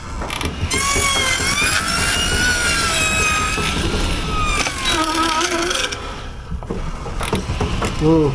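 Drive train of a horse-powered sawmill (line shafts, pulleys and belts) turning over as the horse starts walking: a running mechanical clatter with a long high squeal that wavers in pitch, fading out about six seconds in.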